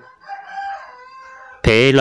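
A rooster crowing faintly in the background, one drawn-out crow lasting about a second.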